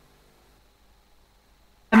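Near silence with a faint steady hum that fades about half a second in, then a woman's voice starts abruptly just before the end.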